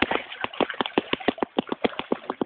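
A rapid run of sharp clicks or taps, about seven a second, uneven in strength, over a faint background hiss.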